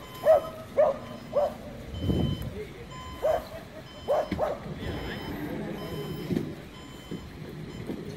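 A dog barking, about six short barks in the first half, over passing road traffic, with short electronic beeps sounding on and off.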